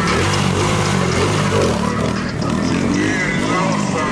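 Dirt bike engine revving up and down as the rider pulls a wheelie, with voices around it.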